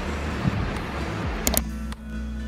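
Rustling with two sharp clicks about one and a half seconds in, from strings of beaded necklaces being put on and fastened at the back of the neck. Background music with steady notes comes in right at the end.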